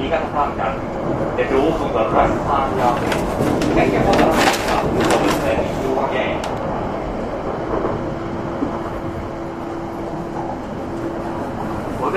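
Running noise inside a Joetsu Shinkansen car slowing on the approach to its terminus: a steady rumble and rush of the train on the track. A louder stretch of rushing and clatter comes about four to six seconds in, and a steady low hum runs through the second half.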